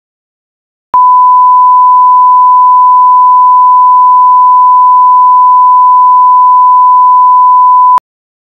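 Loud, steady, single-pitch electronic test tone of the standard 1 kHz line-up kind, starting suddenly about a second in and cutting off abruptly at the end.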